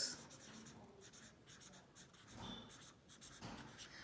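Pen writing a word on lined notebook paper, faint, in a run of short strokes.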